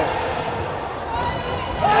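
Futsal play echoing in a sports hall: the ball being struck on the wooden court amid players' voices, during the attack that ends in a goal. The commentator's shout of the goal begins at the very end.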